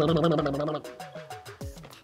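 A man's voice holding one drawn-out, wavering note for just under a second, over background music of short falling plucked notes with a light ticking beat.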